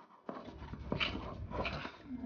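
Spoon beating thick cake batter in a steel bowl, scraping the metal, with a few sharp knocks against the bowl about a second apart.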